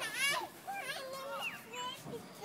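A toddler's high-pitched wordless voice: a short squeal, then a run of short sing-song babbling notes.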